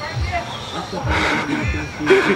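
Indistinct voices of several people talking and calling out, none of it clear speech.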